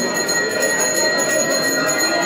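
Temple bells rung continuously for the aarti, a steady unbroken ringing, over a crowd's voices.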